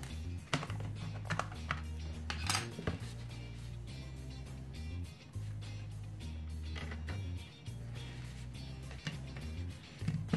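Background music with a steady bass line, over sharp plastic clicks and clacks as the case of an ANENG AN8203 pocket multimeter is carefully pried apart, the clicks bunched in the first few seconds and again around seven seconds in.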